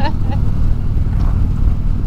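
Harley-Davidson V-twin touring motorcycle at steady highway cruise: a constant low engine drone under a rush of wind.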